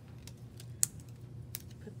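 Light clicks and taps of wooden popsicle sticks and rubber bands being handled and wrapped together, a few sharp ticks with the loudest just under a second in.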